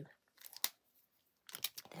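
Faint handling noises of a paper card and craft tools on a desk: a couple of small sharp clicks about half a second in, then a quick rustle and scrape as the card is taken up and slid across the desk near the end.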